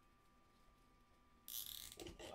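Near silence: room tone with a faint steady whine, then a brief soft hiss about one and a half seconds in.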